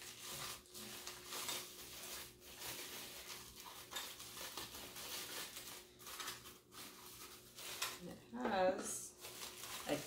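Clear plastic wrapping crinkling and rustling as a small mini lantern is worked out of it by hand, in irregular scrunches.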